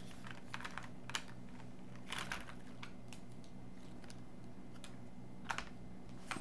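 A few scattered light clicks and taps of highlighter pens being taken out and handled, over a steady low hum.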